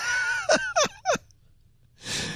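A person laughing in a few short breathy bursts that stop a little after a second in, leaving near silence.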